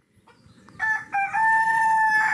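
Rooster crowing, starting nearly a second in: a few short notes, then one long held note.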